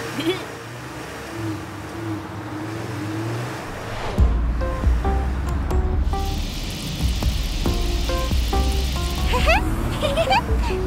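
Cartoon sound effects over light background music: a deep vehicle rumble starts about four seconds in, and from about six seconds a hissing gush of liquid, oil spurting from a leaking tanker truck, runs for about three and a half seconds.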